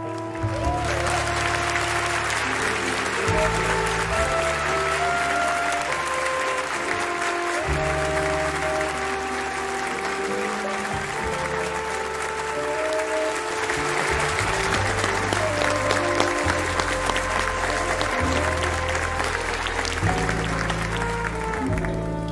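Studio audience applauding over background music; the applause starts about half a second in and stops just before the end, while the music carries on throughout.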